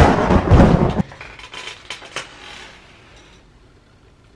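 A sudden, loud, noisy sound-effect hit with a deep low end, lasting about a second, then a faint background with a few light clicks.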